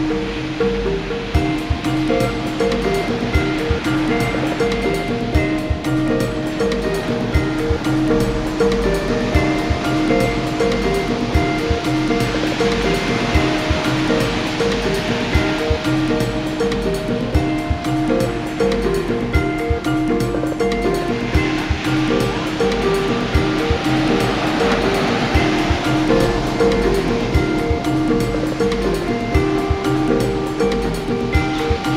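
Ocean surf breaking and washing up a beach, swelling about twelve seconds in and again a little past twenty seconds. Soft new age instrumental music with long sustained notes plays over the waves throughout.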